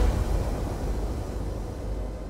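A deep cinematic boom for the title card, its low rumble and hiss fading out slowly and evenly.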